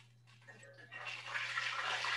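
Beer-battered mushrooms sizzling in hot oil in a cast-iron pan, the hiss swelling from about a second in as a slotted spoon moves them about.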